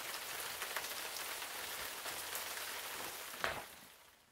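Steady hiss of heavy rain played as a storm sound effect, fading out near the end. Just before it fades there is a short paper rustle as a picture-book page is turned.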